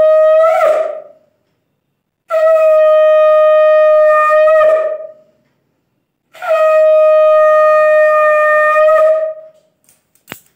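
Conch shell (shankha) blown in long, loud, steady blasts, the customary call at a Hindu puja: one blast ends about a second in, then two more of about three seconds each follow, each opening with a short rise in pitch.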